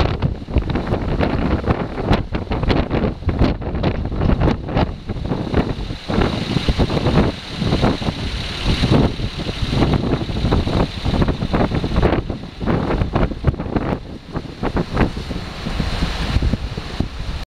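Strong, gusty typhoon wind buffeting the microphone, rising and falling in irregular gusts.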